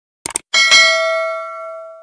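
Subscribe-animation sound effects: a quick double click, then a notification bell ding about half a second in, struck again just after, ringing on with bright overtones and fading away.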